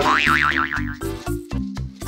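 Comic background music with a bouncing, repeated bass line. Over it, in the first second, a cartoon wobble sound effect: a high tone warbling rapidly up and down.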